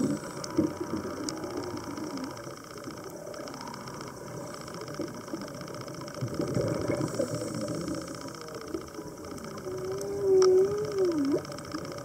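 Muffled underwater noise heard through a camera housing on a dive, uneven and low-pitched, with a few sharp clicks. About ten seconds in, a loud, wavering hum rises and falls for about a second.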